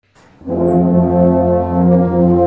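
Brass ensemble of French horns, tubas, trumpets and trombones playing a slow hymn. After a brief silence, a new phrase enters about half a second in with full, sustained chords.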